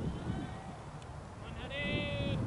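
Wind rumbling on the microphone on an open field, with a faint call just after the start and a louder, high-pitched, wavering call near the end, most likely a distant voice shouting.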